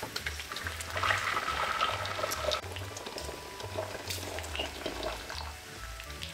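Water poured in a steady stream from a jug into an empty stainless steel pot, splashing and filling. Quiet background music with a pulsing bass runs underneath.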